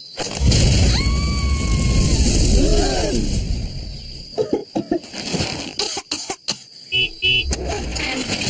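Cartoon sound effect of a mass of flour bursting out of a windmill door: a low rushing rumble lasting about four seconds, with a held tone over it near the start. Several short coughs follow near the end.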